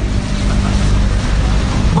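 Steady rumbling hiss of background noise with a faint low hum underneath.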